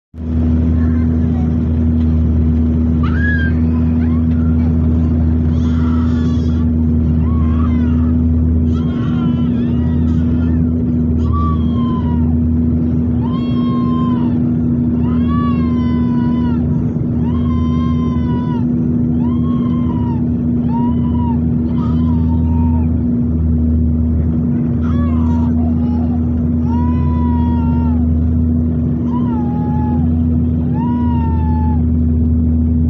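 Turboprop airliner's propeller and engine drone heard inside the cabin: steady and loud, with a low pulsing throb and a steady hum above it. From about a third of the way in, a high voice cries out over it about once a second, each cry rising and falling in pitch.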